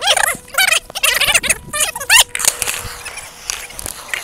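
High-pitched squealing voice sounds, like giggling laughter, in a quick run of short rising and falling calls over the first two seconds, then quieter with a few light clicks.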